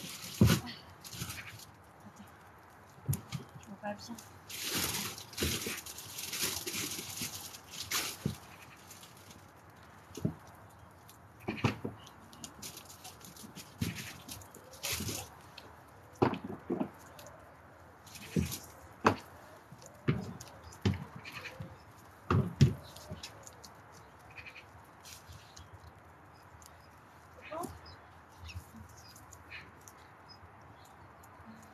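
A herd of guinea pigs giving short squealing calls amid scattered knocks and clatter of food and containers being handled, with a few seconds of rustling about four seconds in.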